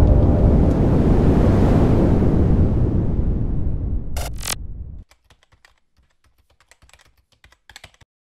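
Intro sound design: a loud, noisy rumble swells and slowly fades, with two sharp hits about four seconds in. It cuts off suddenly about a second later, leaving faint, scattered, rapid clicks like typing.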